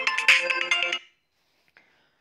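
A short, bright electronic chime, several ringing notes sounding together like a ringtone jingle, that stops about a second in. It is typical of a slide-transition sound effect.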